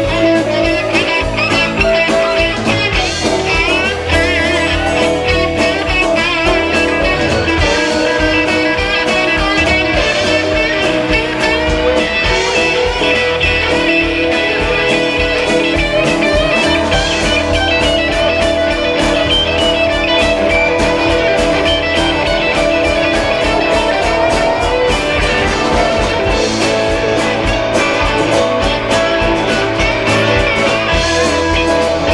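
Live blues-rock band playing an instrumental break, with electric guitar carrying the lead over drums, bass and keyboards and no singing.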